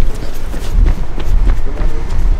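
Hurried footsteps on a pavement, with a heavy low rumble on the microphone of a camera carried on the move.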